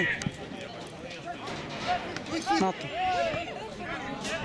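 Speech only: short calls and shouts from players and onlookers during play on an outdoor football pitch.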